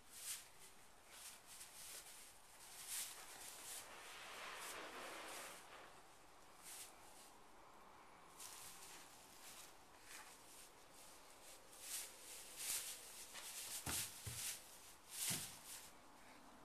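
Faint rustling and crackling of straw bedding as a newborn foal's hooves shift and step, with a soft stretch of rustle a few seconds in and a couple of low thumps near the end.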